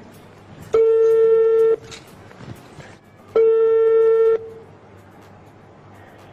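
Telephone ringback tone from a call that has just gone through: two steady one-second rings about two and a half seconds apart, waiting for the other end to answer.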